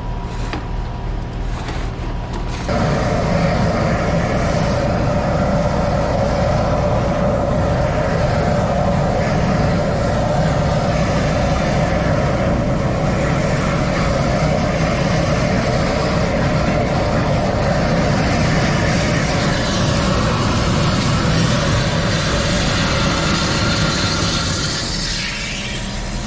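High-pressure drain jetter running, with water jetting through the drain line. It goes up to a loud, steady noise about three seconds in and holds there.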